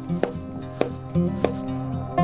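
A wooden mallet knocking a chisel into a squared pine log: three sharp strikes about two-thirds of a second apart. Background music with steady held notes plays under them.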